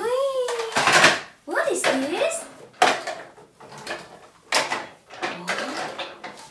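A cardboard toy box being opened and the toy cars pulled out: several short bursts of rustling and scraping packaging, with voices in between.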